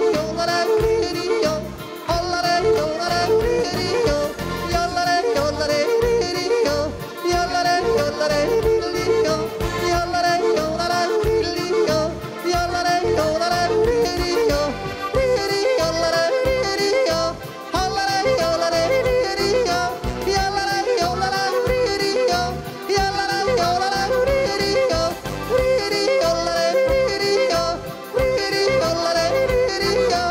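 A man yodeling through a microphone over backing music, his voice leaping quickly up and down in pitch without a break.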